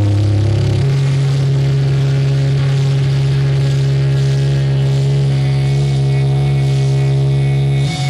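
Distorted electric guitars and bass holding a sustained low chord through the amps, without drums; the chord shifts down about a second in, rings on steadily and breaks off for a moment near the end.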